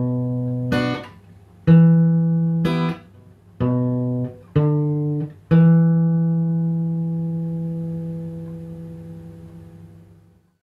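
Acoustic guitar strumming slow single chord strokes, about one a second, moving from A minor to D minor. The last D minor chord, struck about five and a half seconds in, is left to ring and slowly fades away.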